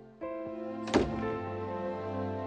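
A door shutting with a single thunk about a second in, over background music that comes in just before it.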